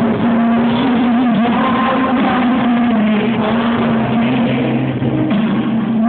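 Live rock band music with a male singer holding long notes, recorded loud and distorted from the audience in an arena.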